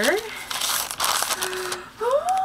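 Paper bag crinkling and rustling as it is handled and a small stack of cards is slid out of it.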